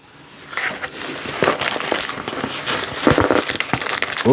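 Plastic accessory bags crinkling and rustling as they are handled, an irregular run of small crackles that grows busier about half a second in, with a louder cluster of crackles near the end.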